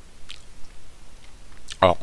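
A pause in a man's speech holding a few faint, brief clicks, then he starts speaking again near the end.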